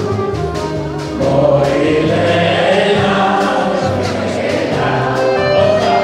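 Live band of drum kit, accordion, upright bass and keyboard playing a song, with several voices singing along.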